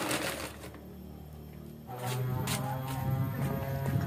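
Thin plastic bag crinkling briefly as it is handled. Then a lull, and about halfway in, background music comes in with held, steady notes.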